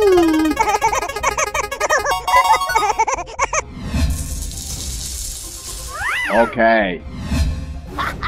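Cartoon soundtrack: background music mixed with cartoonish character vocalizations and sound effects. The first few seconds are busy and warbling, there is a thud about four seconds in followed by a hissing stretch, and near the end come swooping voice-like cries.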